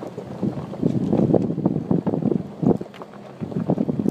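Nissan Xterra SUV jolting along a rough, rocky gravel road: a continuous low rumble broken by frequent irregular knocks and rattles as the wheels hit stones, with wind buffeting the microphone.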